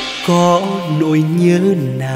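A male singer sings a slow, drawn-out line with no clear words, sliding between long wavering notes over soft accompaniment. The bass and beat drop away just as he begins.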